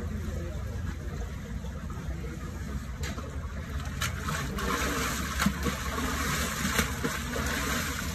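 Water splashing and sloshing as a man plunges fully under the cold water of a plunge pool and surges back up, starting about four seconds in and loudest about halfway through, over a steady low background rumble.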